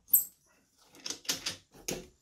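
Metal grip clamp being loosened and lifted off a speaker's top: a sharp high squeak just after the start, then a run of clicks and knocks as the clamp comes free.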